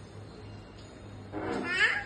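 A toddler's short, high-pitched squeal, rising in pitch, about a second and a half in.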